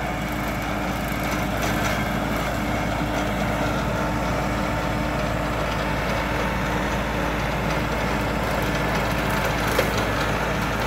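Kioti NX4510 tractor's diesel engine running steadily, with a short sharp crack near the end.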